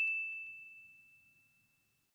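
The fading ring of a single high, clear bell-like ding, a logo sound effect, dying away about a second in.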